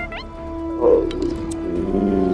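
Background music with a short growl from a large cartoon dragon about a second in.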